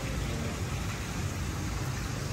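Steady, even outdoor background noise, a hiss with a low rumble under it and no distinct events.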